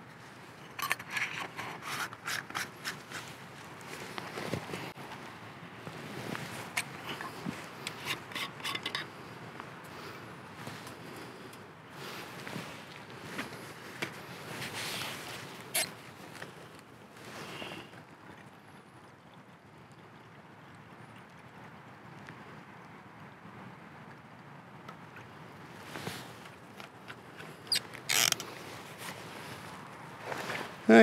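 Scattered metallic clicks, taps and light scrapes of small camping-stove parts being handled: a brass Trangia spirit burner being set into its windshield and a plastic fuel bottle being handled. The handling is busiest over the first several seconds, goes quieter for a stretch, then a few more clicks come near the end.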